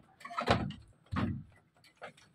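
A few wooden knocks and rattles from the slatted bamboo goat pen as people and goats move about in it, the loudest about half a second in and another just over a second in.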